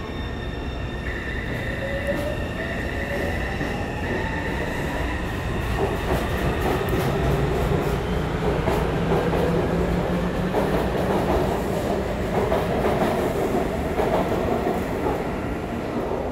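A Taipei Metro C301 electric train pulls away. Its motor whine rises in pitch as it accelerates, then wheel and rail rumble with clatter builds as the cars run past, easing off at the very end.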